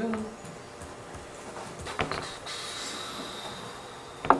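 Quiet classroom room tone, with a short sharp click about two seconds in and then a faint steady high-pitched whine.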